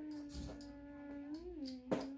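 One long, drawn-out vocal note held at a steady pitch, with a small rise and fall near the end. A sharp click sounds just before the end.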